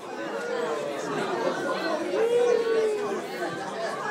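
Many people talking at once in a large room: overlapping chatter, with one voice rising above the rest about halfway through.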